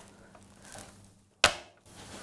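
A single sharp knock, like a hard object striking wood, about a second and a half in, over faint room sound.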